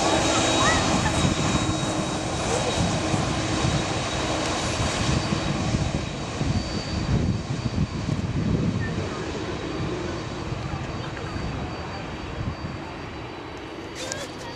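Jet engines of a Boeing 767 airliner running at taxi power as it rolls past: a steady whine with a constant high tone over a rumble, slowly fading over the second half.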